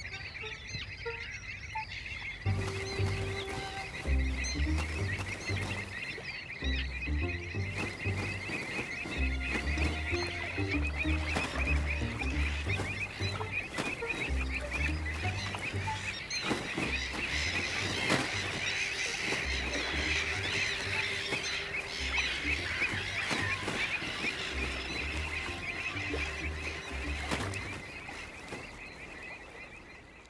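A dense chorus of shorebirds calling, many short overlapping calls at once, with a slow pulsing bass line of background music from a couple of seconds in until near the end, where it all fades out.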